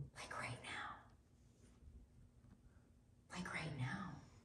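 A woman's voice speaking very quietly, partly whispered, in two short stretches: one at the start and one near the end, with faint room tone between.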